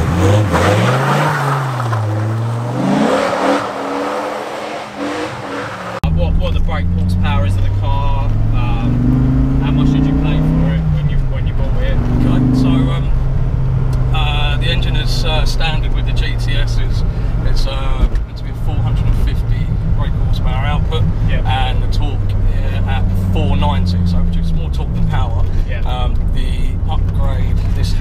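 Dodge Viper GTS's naturally aspirated V10 engine. For the first several seconds it is heard from outside, revving up and down in pitch with a wash of road noise as the car pulls away. After a sudden cut it is heard from inside the cabin, running steadily and rising in pitch a few times under acceleration.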